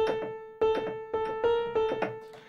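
A piano tone on a keyboard, one note struck about five times in uneven succession, each strike fading out before the next.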